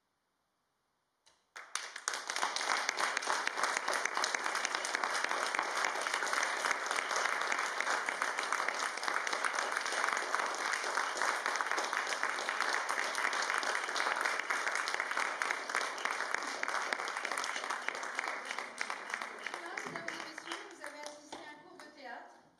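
Applause from a hall full of people, starting suddenly about one and a half seconds in after near silence and going on as steady, dense clapping. It thins near the end as voices come through.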